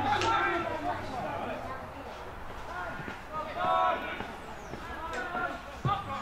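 Footballers' voices shouting and calling out across an open grass pitch in short, distant bursts, with a single sharp thud near the end.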